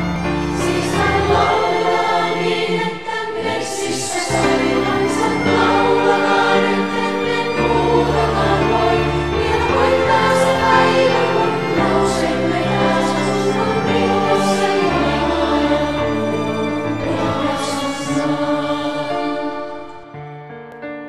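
A choir of many voices singing a slow song together, with instruments and a held bass line underneath; the music dies down near the end.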